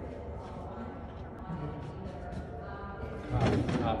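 Outdoor background noise with faint voices, and a louder voice-like burst near the end.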